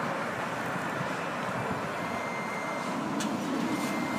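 Steady road traffic noise from a busy street, a continuous even rush with no distinct events; a faint thin high tone joins it about halfway through.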